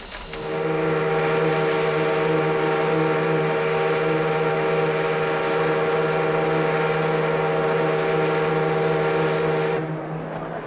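Ocean liner's horn sounding one long, steady, deep blast that stops sharply near the end: the all-ashore warning before the ship sails.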